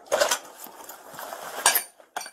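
Metal clinking and rattling as a deputy's gear is handled, with sharp clanks about a quarter second in and again near the end.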